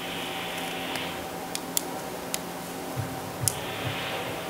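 Quiet meeting-room tone with a steady electrical hum, a few sharp little clicks, and soft rustling of paper as pages are handled, once at the start and again near the end.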